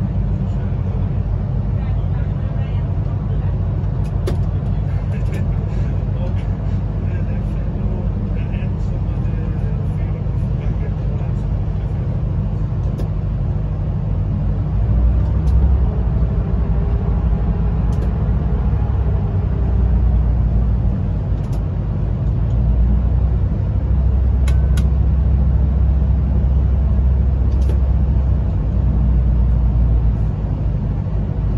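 Electric train running through a long rock tunnel, heard from the driver's cab: a steady low rumble of wheels on rail with scattered faint clicks. The rumble grows louder about halfway through and again near the end.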